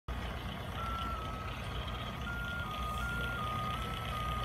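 A thin electronic tone that steps up and down between a few close pitches every half second or so, over a low steady hum.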